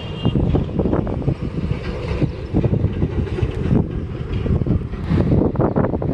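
Wind buffeting the microphone outdoors: a loud, gusting low rumble that rises and falls unevenly.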